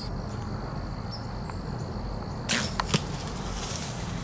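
Compound bow shot about two and a half seconds in: a sudden burst of string and limb noise at the release, then about half a second later a sharp crack as the arrow strikes the deer.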